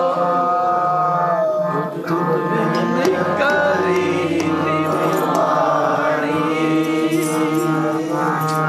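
Sikh kirtan: men's voices singing together to harmoniums, with tabla strokes joining about three seconds in.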